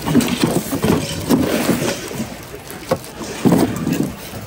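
Items being rummaged through in a cardboard box: cardboard flaps and plastic-wrapped goods shuffling and rustling, with a few sharp knocks.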